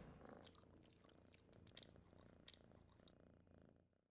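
Near silence: a faint domestic cat purring, with a few soft ticks.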